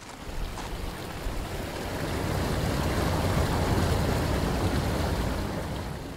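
A steady rushing noise, heaviest in the low end, that swells over the first few seconds and eases off near the end.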